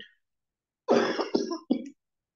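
A man coughing, about three quick coughs in a row starting about a second in.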